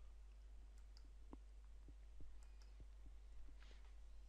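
Near silence with a few faint, sharp clicks, the clearest about a second and a half in: a computer mouse being clicked.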